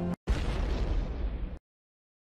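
Background music cuts out, then a single loud boom-like impact sound effect hits and rumbles for about a second before stopping abruptly, followed by dead silence. It is the reveal sting for a country being added to the qualifiers list.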